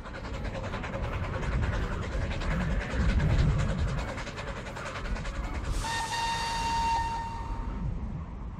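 Steam train running with a fast, steady rhythm. About six seconds in, a steam whistle sounds one steady note for about two seconds.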